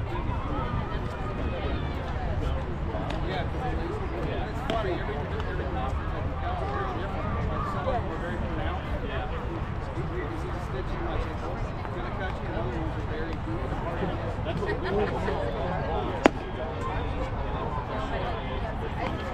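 Indistinct chatter of players and spectators at a youth baseball game, over a steady low rumble. Near the end there is one sharp pop, a pitch smacking into the catcher's mitt.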